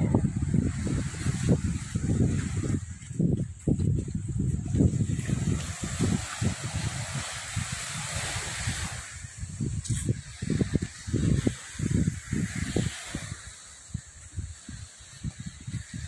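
Wind buffeting the microphone in irregular low rumbles, over the hiss of small waves washing onto a sandy beach. The surf hiss is strongest around the middle.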